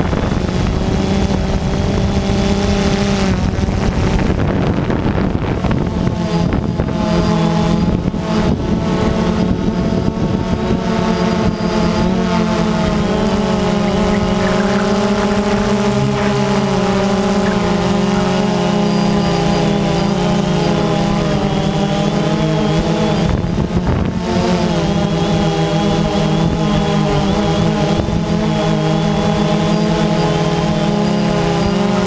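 DJI Phantom 2 quadcopter's motors and propellers humming loudly, heard up close from the camera mounted on the drone, with several tones drifting up and down in pitch as the motors change speed.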